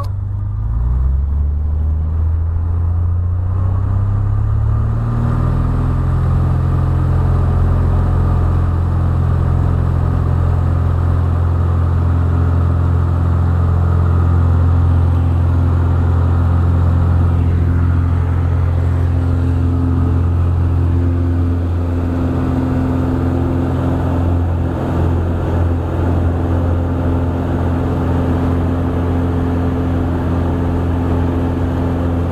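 Single-engine propeller plane's engine, heard from inside the cabin, going to full power for takeoff. Its drone climbs in pitch over the first few seconds, then holds steady and loud through the takeoff roll and climb-out.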